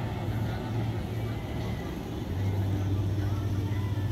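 A motor vehicle's engine running with a steady low hum that drops slightly in pitch about halfway through.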